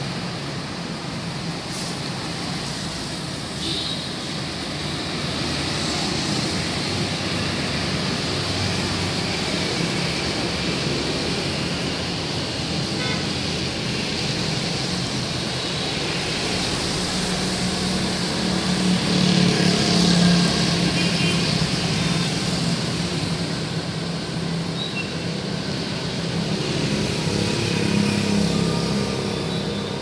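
Street traffic on a wet road: motorbikes and cars passing steadily, with tyre hiss. A louder engine passes about two-thirds of the way through, and another near the end.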